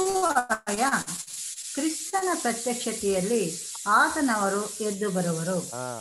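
A voice talking over a loud, steady hiss on the call audio. The hiss cuts in and out abruptly together with the voice.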